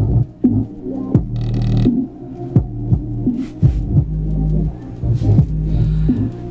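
Bass-heavy electronic dance music played loudly through an exposed 20-watt, 5.5-inch subwoofer driver, with deep sustained bass and repeated punchy kick-drum hits.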